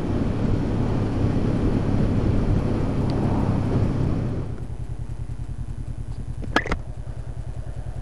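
2013 Honda CB500X parallel-twin with a Staintune exhaust, riding along with road and wind noise over the engine. About halfway through, the noise falls away and the engine settles to low revs with evenly spaced exhaust pulses.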